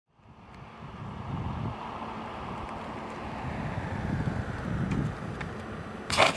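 Wind noise on the microphone: a low, uneven rumble under a steady hiss, fading in over the first second.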